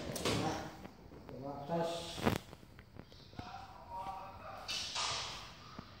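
Handling noise from a recurve bow and arrows, with one sharp snap about two seconds in, the kind a bowstring release or an arrow strike makes, and faint voices in between.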